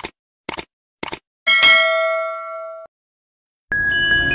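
Subscribe-button animation sound effects: three short clicks about half a second apart, then a bright bell ding that rings for over a second and cuts off sharply. Near the end a chiming music sting begins.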